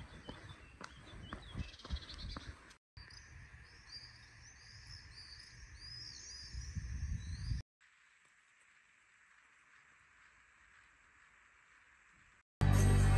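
Birds chirping, with many quick repeated chirps in the middle stretch over a low rumble that swells towards its end. After the rumble cuts off, about two-thirds of the way in, the sound drops to near silence.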